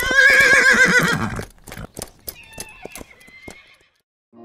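A horse neighing: one loud, quavering whinny lasting about a second and a half. It is followed by a scattered run of hoof clops that fade away over the next two seconds.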